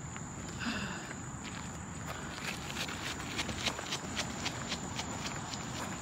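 Footsteps of a person jogging on a paved path, a quick regular pace of about three steps a second that becomes distinct in the second half.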